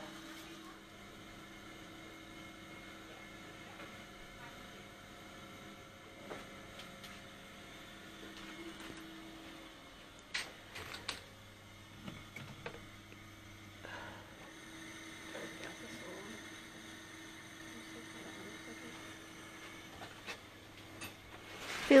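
Quiet room tone with a faint steady electrical hum from clinic equipment. About halfway through come a few soft clicks and knocks of medical supplies being handled in plastic drawers.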